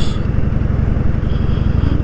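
Harley-Davidson Dyna Fat Bob's air-cooled Twin Cam 103 V-twin running steadily under way at road speed. A fast, even low rumble of firing pulses sits under a rushing noise.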